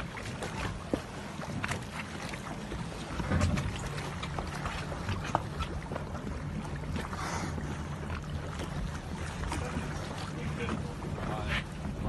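Rigid inflatable boat on the water: a steady low engine hum with water splashing at the hull and wind on the microphone, broken by scattered short knocks.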